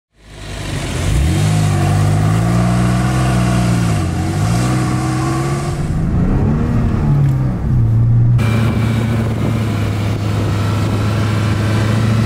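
Porsche 911 Carrera 4S (996) flat-six engine revving, its pitch rising and falling several times, then running at a steady pitch from about eight seconds in.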